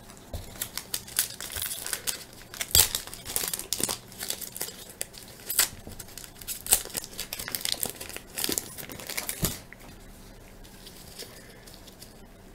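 A baseball card pack's wrapper being torn open and crinkled by hand, in irregular crackles for about ten seconds. It goes quieter near the end as the cards come out.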